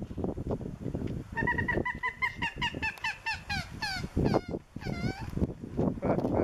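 A wetland bird calling: a run of short repeated notes, about four a second and climbing in pitch, followed by a few longer falling notes, over low rumbling wind noise on the microphone.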